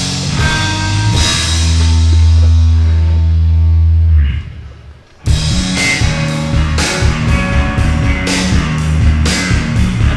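Loud rock music from a full band with guitar, bass and drums. A chord is held and rings out for about three seconds, then fades and drops away; about five seconds in the drums and full band come crashing back in.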